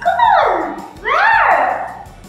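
Sliding-pitch sound effect: a single tone glides down, then glides back up, holds briefly and falls away again.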